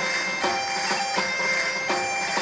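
Live folk music on bagpipes (gaita): a steady drone under a melody, with percussion hits falling about every three-quarters of a second.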